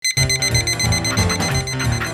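Digital alarm clock beeping rapidly in a high pitch, over music with a steady bass beat.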